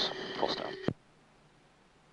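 The end of a radio voice call over the aircraft's radio, with a steady hum under it, cut off by a sharp click just under a second in as the transmission is unkeyed. After that there is only near silence with faint hiss.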